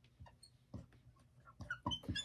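Dry-erase marker writing on a whiteboard: faint scratchy strokes with a few short, high squeaks, louder near the end.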